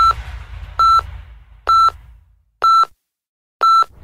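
Five short, identical electronic beeps about a second apart, each a single steady mid-pitched tone: a countdown signal into the start of a radio news bulletin. The music underneath fades out during the first half.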